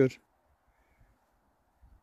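The last syllable of a man's speech, then near silence until the end.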